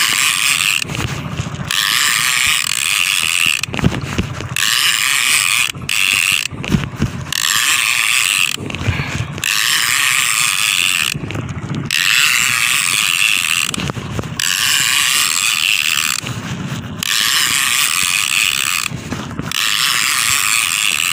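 Shimano Torium conventional trolling reel being cranked hard in runs of a second or two with short pauses between, its gears giving a loud ratcheting buzz as a hooked fish is reeled in.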